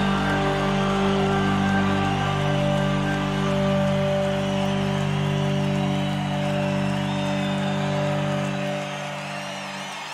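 Live blues-rock band holding a long sustained final chord, electric guitars ringing, with a haze of crowd noise beneath; it slowly fades near the end and then cuts off.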